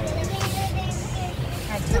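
Indistinct voices over a steady low background rumble, with a short knock about half a second in.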